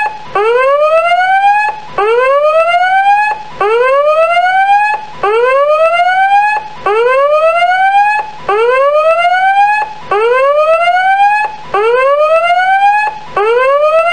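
Countdown timer's end alarm: a whooping siren tone that rises in pitch over about a second and a half, breaks off, and starts again about every 1.6 seconds, signalling that the countdown has reached zero.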